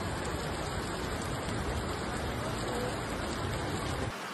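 Steady rushing noise of heavy rain and muddy floodwater running fast down a city street.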